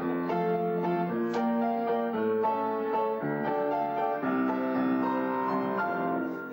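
Grand piano playing a passage on its own, a melody over chords that change several times a second.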